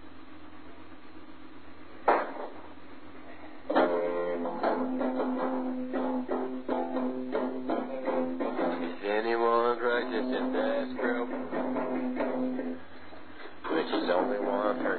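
Lo-fi home recording of a self-taught player's guitar: a steady hum and hiss with a click about two seconds in, then strummed guitar chords start about four seconds in and carry on.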